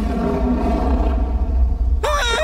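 Cartoon soundtrack cue: a deep, heavy rumble under a held, eerie chord.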